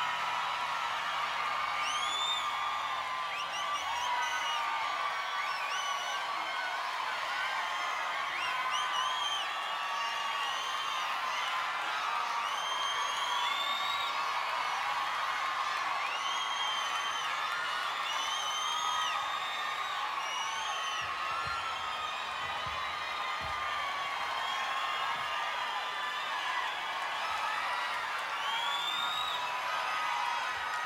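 Concert audience cheering and screaming without a break, many high-pitched shrieks and whoops rising and falling over a steady roar of voices.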